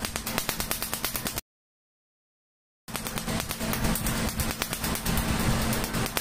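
Tattoo-removal laser firing rapid pulses against the skin, each pulse a sharp snap, about ten a second, over a steady low machine hum. The snapping breaks off completely for about a second and a half, then carries on.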